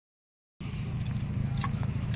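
Car engine idling with a low, steady rumble, starting about half a second in, with a few light metallic jingles about a second and a half in.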